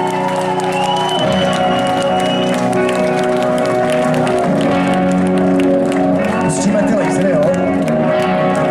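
Live rock band opening a song with held, sustained chords that change every few seconds, over a crowd applauding and cheering.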